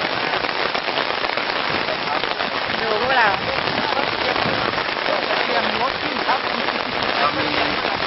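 Heavy rain falling steadily: a dense, even patter of drops.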